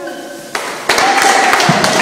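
Music track with held, sung notes that turns loud and full about a second in, with percussive hits.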